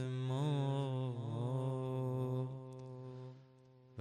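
A man's solo voice singing a long, ornamented held note of a Persian Muharram mourning elegy for Hussein; the note wavers in pitch during the first second and a half, then holds and fades away about three seconds in.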